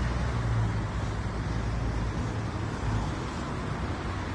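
Road traffic noise from a city street: a steady hiss of passing vehicles with a low engine rumble that eases off about halfway through.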